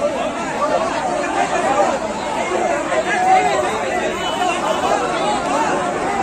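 A large crowd's voices: many people calling out and talking at once in a steady, overlapping din.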